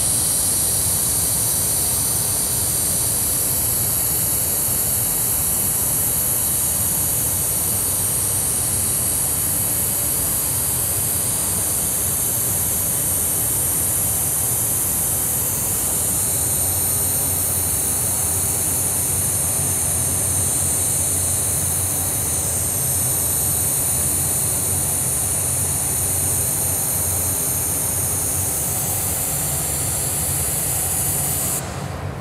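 Steady hiss of compressed air from a gravity-feed airbrush spraying fine silver paint, running without a break over a low steady rumble.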